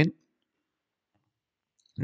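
The last syllable of a man's speech trailing off, then near silence with a few faint clicks from a computer mouse.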